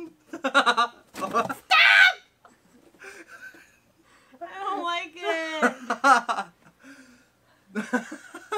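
A man and a woman laughing nervously and letting out squeals and wordless exclamations in several bursts, the loudest about two seconds in and a longer stretch past the middle.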